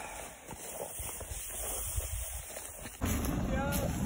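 Low, uneven rumble of wind and handling noise on a phone microphone while walking through undergrowth. The sound changes abruptly about three seconds in, after which faint voices are heard.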